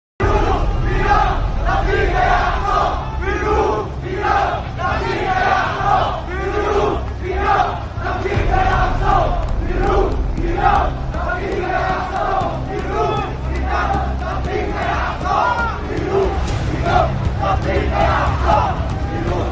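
Large crowd of marchers shouting and chanting slogans, many voices in repeated phrases, over a steady low rumble.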